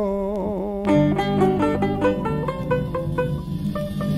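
Bahamian string band music: a held sung note slides down and ends in the first second, then plucked banjo and guitar notes run on over string bass.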